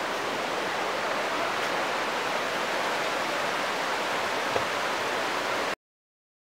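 Fast river water rushing steadily, a river rising with an oncoming flood. The sound cuts off suddenly near the end.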